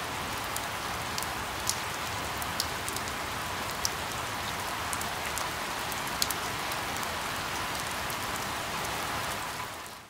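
Steady rain falling, an even hiss dotted with sharp ticks of single drops, fading out at the very end.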